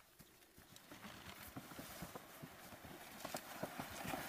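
Footsteps crunching through forest undergrowth, with leaves and twigs rustling and a plastic rescue litter scraping over the ground as it is dragged. The steps and scrapes come as irregular short crackles that grow louder toward the end.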